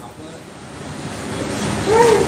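Pause in a man's talk into a close-held microphone: a soft, even rushing noise that slowly swells, ending in a brief voiced sound as he starts speaking again.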